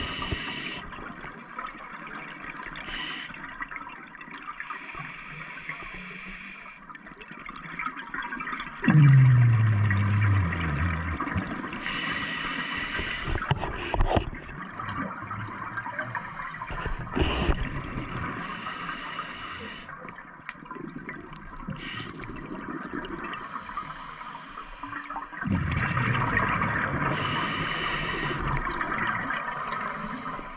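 Scuba diver breathing on a regulator underwater: slow breath cycles of hissing intake and rushing, gurgling exhaled bubbles, several times. About nine seconds in, a low tone falls in pitch over a second or two, the loudest sound here.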